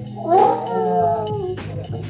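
A woman's single long, howl-like cry that rises sharply and then falls away over about a second, her reaction to the cold water, over background music.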